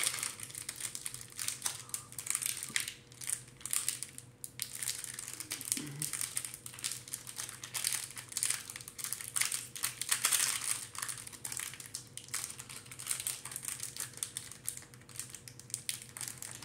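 Plastic packaging of a Pokémon card pack crinkling and crackling unevenly as hands work at it, trying to get a thick, hard-to-open package open.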